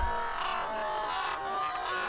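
Audio of a Korean TV variety-show clip playing: music at a steady level with overlapping voices mixed in.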